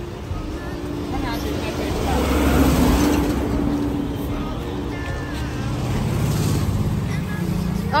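Road traffic passing, with a louder swell as a vehicle goes by about two to three seconds in and another around six seconds.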